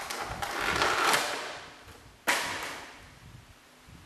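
Crinkling and rustling of a plastic toy package being handled, then a sudden sharp crackle of plastic a little over two seconds in that dies away.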